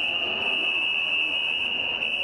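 A continuous shrill tone held at one unchanging high pitch, over a murmur of many voices in a large hall.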